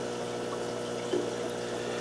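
Steady background hum with a faint watery hiss from running aquarium equipment.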